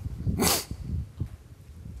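A single short, sharp burst of a person's breath, like a sneeze or cough, about half a second in, followed by quiet room sound.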